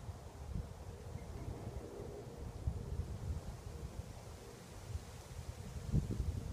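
Wind buffeting a phone microphone: an uneven low rumble with irregular gusts.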